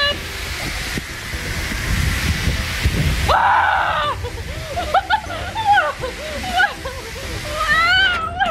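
Steady rushing air as a giant balloon is inflated around a woman, cutting off sharply about three seconds in as she screams; her excited exclamations follow.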